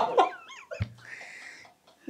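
A man's stifled laughter behind his hands. Quick high squeaks come first, then a soft thump, then a held high-pitched wheeze that fades out near the end.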